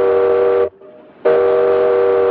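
Steamboat steam whistle blowing a chord of three tones: one blast cuts off under a second in, and after a brief gap a second blast starts and holds steady.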